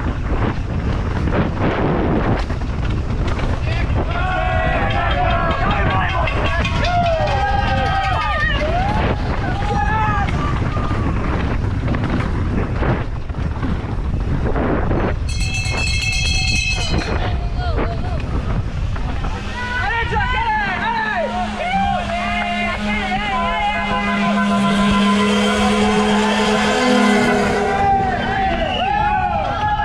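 Rumble of a mountain bike's tyres on a dry dirt trail and wind on the body-mounted camera, with frequent knocks from the bike over rough ground. Spectators shout and cheer along the course. A short high ringing tone comes about halfway through, and a long held horn-like tone joins the cheering in the last few seconds.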